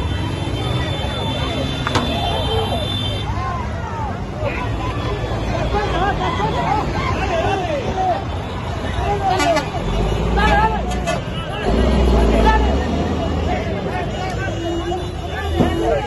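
A crowd of many voices shouting and calling at once on a street. Heavy lorry engines run close by, with a deep rumble that swells twice around the middle.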